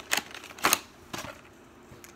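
Plastic 3x3 puzzle cube handled and turned in the hands, giving a few sharp plastic clicks about half a second apart.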